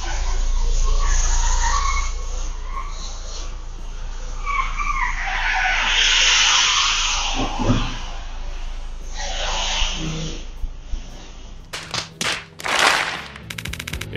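Car tyres squealing on a smooth car-park floor over a steady low engine rumble as an SUV manoeuvres into a tight parking space, loudest about six to seven seconds in. A quick run of sharp clicks and swishes comes near the end.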